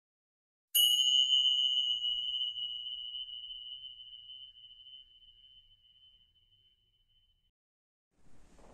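A single bright chime struck once about a second in, ringing on one high, clear note and slowly dying away over about seven seconds.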